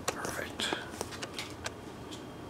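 Magic: The Gathering cards being slid one by one from the front to the back of a hand-held stack: several short card-on-card flicks and rustles.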